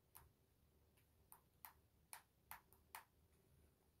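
Near silence broken by about seven faint, sharp clicks at uneven spacing, over the first three seconds.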